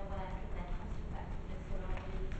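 A woman speaking, over a steady low rumble.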